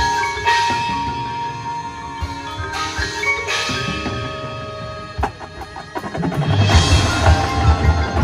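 Marching band front ensemble mallet percussion (marimba, vibraphone, chimes) playing held, ringing chords. About six seconds in the music swells louder with a low, pulsing beat as more of the band joins in.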